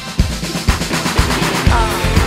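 Live pop-rock band music from a concert: a kick drum about two beats a second under busier drumming that builds up, with the full band coming in near the end.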